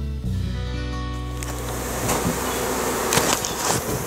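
Background music fading out in the first second and a half, then a colony of honey bees buzzing around exposed comb, with a few sharp clicks and knocks.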